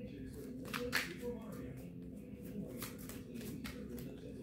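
A deck of tarot cards being shuffled by hand: an irregular run of soft card clicks and slides, with a faint steady hum underneath.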